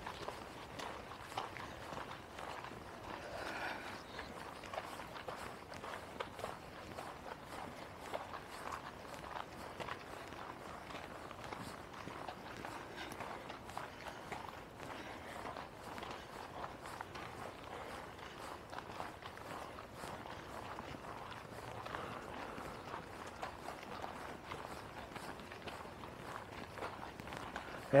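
Faint, steady footsteps on a dirt woodland trail scattered with dry leaves.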